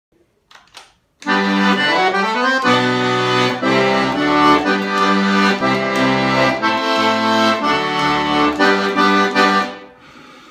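Excelsior piano accordion, a three-voice instrument tuned in octaves, playing a short tune: melody and chords on the keyboard over changing bass notes. It starts about a second in and stops just before the end.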